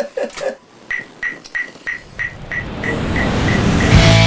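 Laughter trailing off, then a run of short, evenly spaced high clicks, about three a second, fading away. Under them a noisy rumbling swell rises from about halfway through and builds into loud rock music at the very end.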